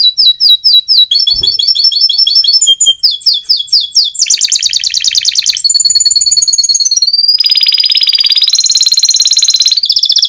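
Domestic canary singing a long, loud song. It opens with a run of separate repeated chirps, then moves into fast trills. In its second half come long, high rolled tones that change phrase every second or two.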